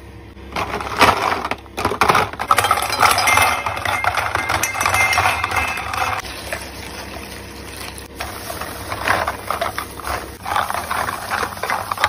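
Empty clear plastic lip gloss tubes clattering and rattling against each other and a bowl as they are tipped and stirred by hand: a dense run of small clicks and clinks, pausing briefly about eight seconds in.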